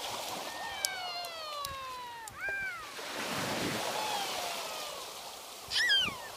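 A toddler's high-pitched voice: long falling cries, then a loud squeal near the end as a wave washes over him. The wash of small breaking waves is heard behind.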